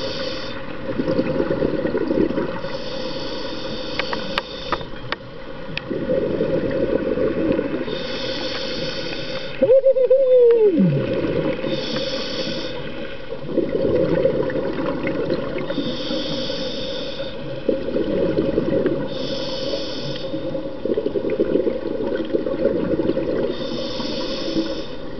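Scuba regulator breathing underwater: a hiss with each inhalation about every four seconds, alternating with the bubbling of exhaled air. About ten seconds in, a single tone slides down in pitch over a second or so.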